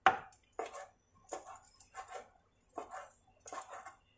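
Kitchen knife slicing cooked beef on a plastic cutting board: about six cuts, the blade knocking on the board roughly every two-thirds of a second, the first cut the loudest.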